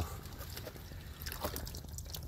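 Water trickling and dripping from a chilli plant's bare roots into a tub of water as soil is teased off them by hand.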